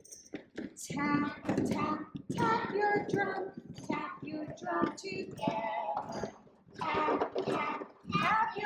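Group of young children singing together, after a few light knocks of plastic buckets being handled in the first second.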